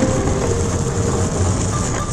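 Skateboard wheels rolling over rough asphalt, a steady gritty rumble.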